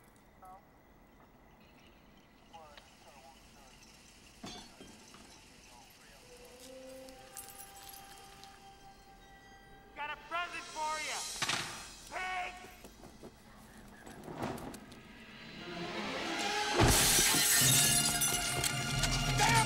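Movie action soundtrack: mostly quiet with faint music, short vocal sounds about ten seconds in, then a loud crash with shattering glass building up near the end.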